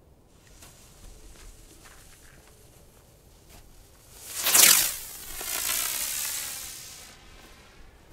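A Nico Galaxy Copter, a small rising spinner firework, first fizzes faintly on its fuse. About four and a half seconds in it goes off with a sudden loud whoosh. A strong hiss follows as it spins up into the air, and this fades away over about two seconds.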